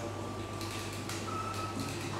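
Lull between songs: a steady low electrical hum from the stage amplification, with a few faint clicks.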